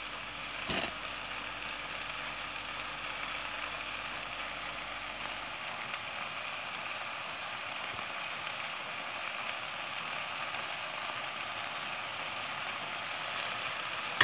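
Purslane frying in olive oil in a stainless steel pan: a steady sizzle, with one light knock about a second in.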